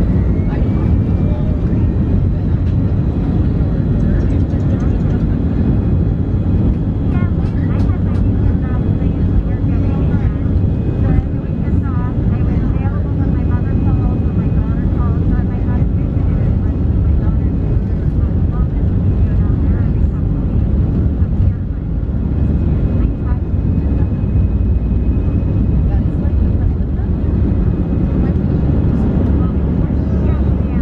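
Airbus A319 jet engines at takeoff thrust, heard inside the cabin over the wing, with the steady loud rumble of the takeoff roll. A whine rises just at the start as the engines spool up.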